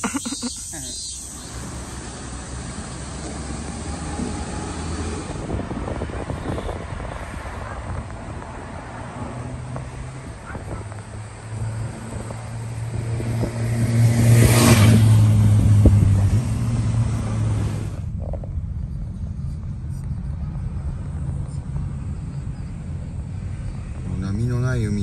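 An Enoden (Enoshima Electric Railway) train running past close by: a rumble with a low hum that builds to its loudest a little past the middle, then fades. After that, a steadier low road rumble from inside a moving car.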